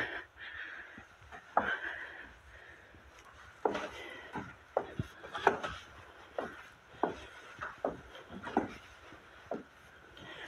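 Footsteps going down a wooden staircase: about a dozen uneven knocks on the treads, starting about a second and a half in.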